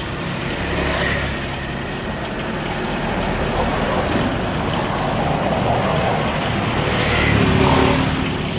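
Road traffic running past, a steady noise that swells as a vehicle passes close near the end.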